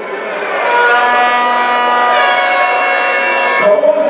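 An air horn sounding one steady blast of about three seconds over a noisy crowd.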